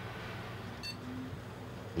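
Steady low hum of running computer equipment, with one short high electronic beep a little under a second in.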